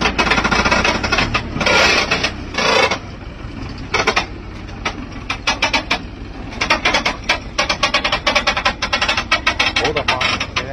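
Diesel engine of a heavily loaded log truck running low as it crawls downhill, under a rapid, irregular clatter of knocks and rattles, with two louder bursts of noise about two seconds in.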